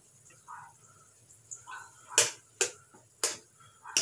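A little water poured from a small glass bottle into a pan of tomato sauce: a few faint glugs, then three or four sharp clicks in the second half.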